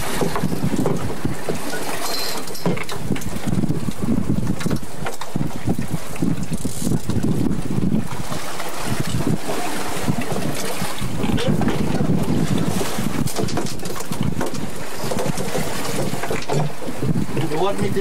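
Wind buffeting the microphone in a steady low rumble with irregular gusts, over the wash of a boat moving through choppy sea.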